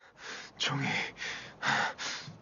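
A person gasping: two breathy gasps about a second apart, quieter than the speech around them.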